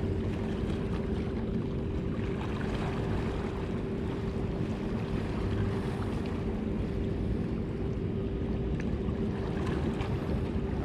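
Steady low drone with a constant hum, the sound of ship engines or generators running across the harbour, over a rumble of wind noise on the microphone.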